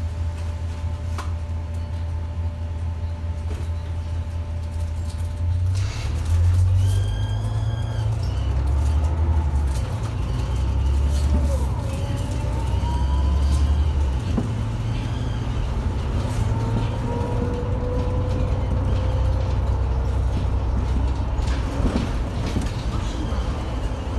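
City bus heard from inside the passenger cabin: the engine idles steadily while the bus is stopped, then about six seconds in it pulls away and accelerates, its low engine rumble swelling in steps and a whine rising in pitch as it gathers speed.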